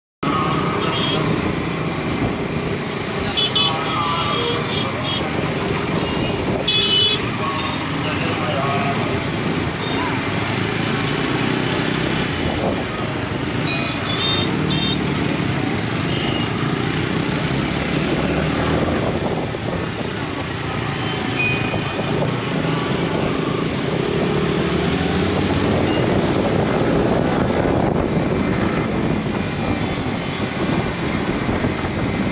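Yamaha R15M and surrounding motorcycles running in slow, crowded city traffic, a steady mix of engine and road noise. Short horn toots sound about three and a half and seven seconds in, with voices in the crowd.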